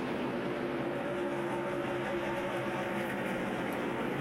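Pack of NASCAR Nationwide Series stock cars running at racing speed, their V8 engines blending into one steady, even drone.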